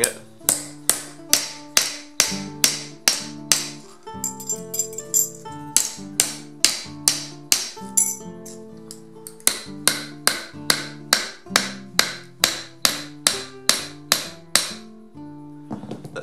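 Claw hammer striking a small steel plate on the anvil face of a bench vise, a steady run of blows about two to three a second, each with a short metallic ring, flattening out a wrinkle in the plate. The blows stop shortly before the end. Guitar background music plays underneath.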